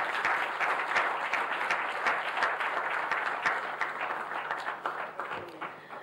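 Audience applauding, a dense run of hand claps that thins out and fades near the end.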